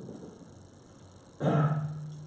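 A man's voice: after a quiet pause, a short rough sound starts suddenly about one and a half seconds in and is held on one low pitch for about half a second.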